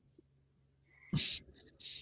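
Mostly quiet, with one short breathy laugh about a second in and a quick intake of breath near the end.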